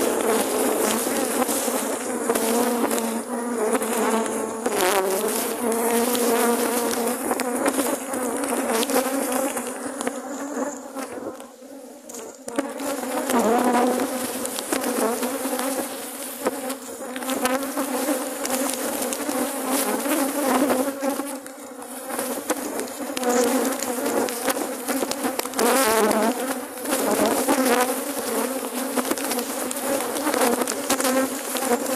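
A dense mass of honeybees buzzing loudly and continuously close around the microphone at opened hives, briefly quieter about twelve seconds in. The colony is agitated and defensive: the bees have got really riled up.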